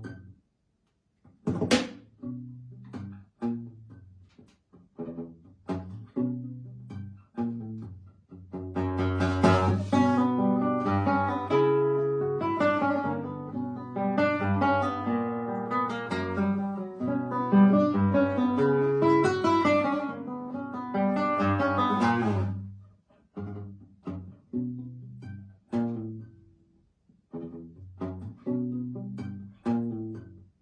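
Solo classical guitar with nylon strings: single plucked notes and chords with short pauses between them, then a fast, dense, louder run of notes from about a third of the way in to about three quarters, after which the playing thins back to separate notes and chords.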